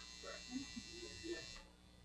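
Quiet room tone: a faint steady electrical hum and hiss that cuts off about one and a half seconds in, with a few soft, faint murmurs.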